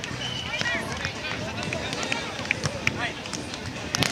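Scattered voices of players on sand volleyball courts, with a few sharp slaps of hands striking a volleyball, the loudest one near the end.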